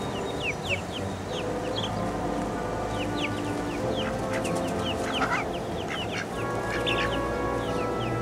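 Chickens calling in a steady run of short, high, falling peeps, several a second, over soft background music with held notes.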